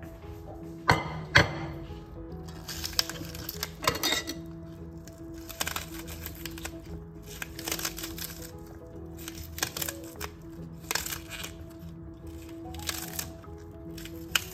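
Irregular sharp clicks of a kitchen knife slicing through crisp spring onion stalks held in the hand, roughly one a second, the loudest two about a second in. Soft background music with steady held notes plays underneath.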